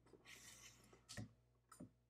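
Near silence with two faint short clicks, one a little past a second in and one near the end, from the carriage parts of a 1910 Austria Model V mechanical calculator being handled.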